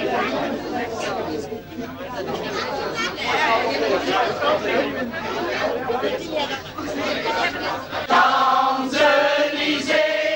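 Crowd of people talking at once in a room, a dense chatter of many voices. About eight seconds in, a group of supporters starts singing together in held notes.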